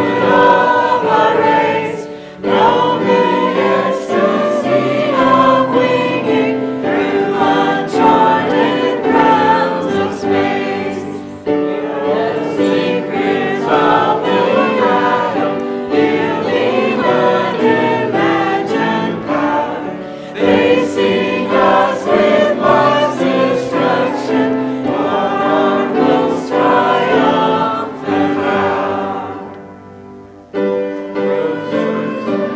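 Choir and congregation singing a hymn together with piano accompaniment, phrase after phrase with short breaths between lines, trailing off near the end.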